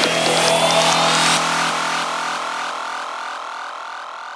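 Psytrance breakdown: a synth sweep rises in pitch over the beat until the drums and bass drop out about a second and a half in. A stepped, rising synth pattern then carries on alone, fading steadily.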